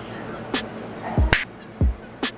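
Finger snaps, two sharp ones with the second louder, a little past halfway, over background music with a deep kick-drum beat.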